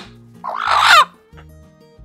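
A single loud chicken squawk, about half a second long and a little under a second in, over background music with a steady bass line.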